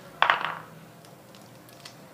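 Fresh pea pods being shelled by hand: a short, bright clink about a quarter second in, followed by a few faint clicks of pods being split.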